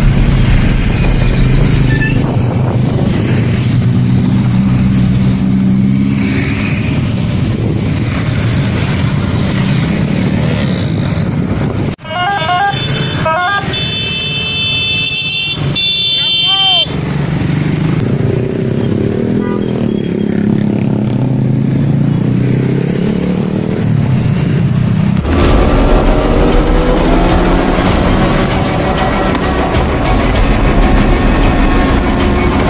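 Motor scooters and cars of a convoy passing close by, their engines running, with horn toots and voices in the middle.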